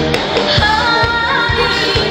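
A woman singing an upbeat pop song into a microphone over band accompaniment with a steady drum beat; her voice comes in about half a second in.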